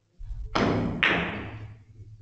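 Billiard shot: the cue strikes the ball and the balls knock together, two sharp impacts about half a second apart, each ringing on briefly in the room.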